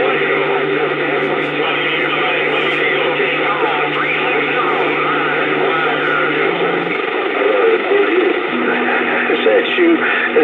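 Uniden Bearcat CB radio receiving on channel 28: static with weak, garbled voices talking over one another. A steady low tone runs under them for the first two-thirds, and a different steady tone comes in near the end.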